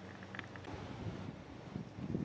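Faint outdoor background: a low steady hum, with wind buffeting the microphone and some low rumble from about the middle on.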